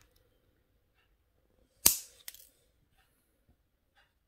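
Flush cutters snipping through 0.8 mm wire: one sharp snip about two seconds in, followed by a fainter click.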